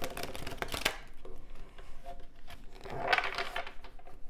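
A deck of tarot cards being shuffled by hand: a quick run of riffling clicks through the first second, then another shuffle burst about three seconds in.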